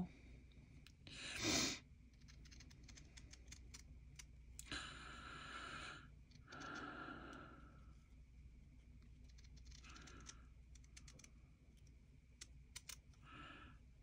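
Small scissors snipping out little fabric leaf shapes: faint, scattered snips and blade clicks, with a few short, louder cuts, the loudest about a second and a half in.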